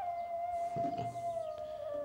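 Background film music: a single high note held steadily, sinking slightly in pitch toward the end.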